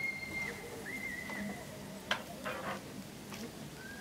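A violin played haltingly in a high register: a thin held note that breaks off about half a second in, then a shorter wavering note about a second in. A sharp click follows about two seconds in.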